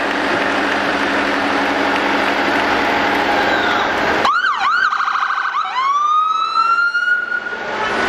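Steady street noise, then about four seconds in an electronic vehicle siren cuts in suddenly. It gives a few quick up-and-down wails, then a fast warbling yelp, then a rising wail that holds and fades just before the end.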